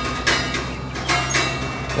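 Music of struck metal: a quick run of bright, chime-like notes, several a second, each ringing on.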